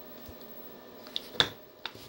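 Sharp clicks from hands handling a flexible endoscope and its cable: one loud click about one and a half seconds in, with fainter ticks just before and after.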